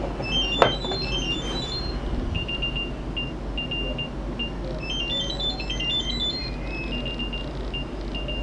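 Samsung Galaxy Buds FE earbuds sounding their find-my-earbuds alert: short high beeps repeated over and over, broken by quick stepped runs of chirps that climb and fall. The alert lets a misplaced earbud be located. There is a single click early on.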